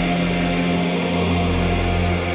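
Intro of an uplifting psytrance track: sustained synthesizer chords held over a low droning bass, with no drum beat.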